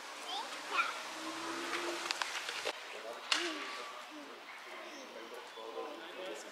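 Young children's voices at play, faint and intermittent, with a few light clicks and knocks and one sharper click about three seconds in.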